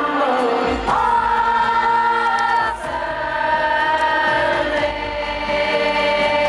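Live pop ballad music played through a concert sound system: a male singer holds long notes over piano and keyboard backing, with a brief break in the line just before the middle.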